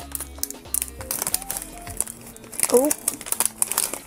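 Foil blind-box pouch crinkling and rustling as it is opened by hand, with a clear plastic inner bag being pulled out of it.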